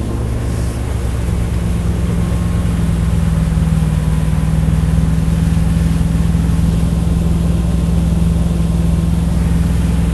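Malibu wake boat's inboard engine running steadily at towing speed, about 12 mph. The hum gets a little louder over the first few seconds, then holds steady.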